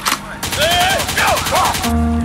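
A rapid burst of machine-gun fire, a single shot at the start followed by a fast even rattle of about a second and a half that cuts off near the end, with shouting voices over it.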